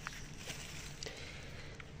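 Faint rustling of garden leaves and stems as a hand reaches in among the plants to pick up a fallen apple, with a few light ticks about once a second.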